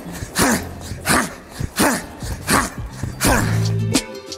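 Repeated straight knees driven into a leather heavy bag from the clinch, five strikes about 0.7 s apart, each with a short sharp exhaled grunt, over background music.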